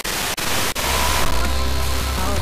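Wideband FM receiver tuned off-station in the 66–74 MHz band: loud hiss of static, broken by a few brief dropouts. About a second in, music from a weak, distant station heard by sporadic-E propagation comes up through the noise.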